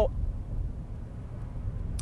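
Steady low rumble of road and engine noise inside the cabin of a 2021 Toyota 4Runner driving on a snowy highway.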